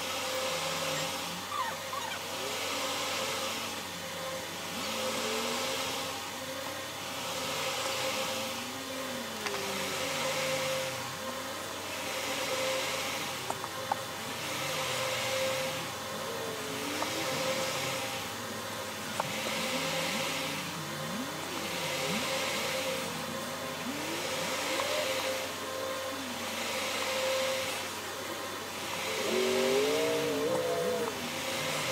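Steady machine hum with a hiss that swells and fades about every two seconds, and faint wavering tones beneath it.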